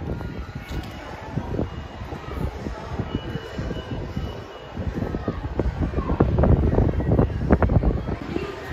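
Wind buffeting the microphone: an irregular, gusting rumble, heaviest in the second half.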